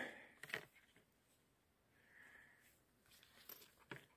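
Near silence, with a faint click about half a second in.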